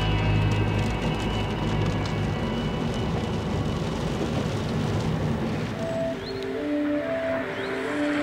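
A car driving on a wet road, heard from inside the cabin: steady tyre and engine noise. Background music fades out early and a few held musical notes come back in near the end.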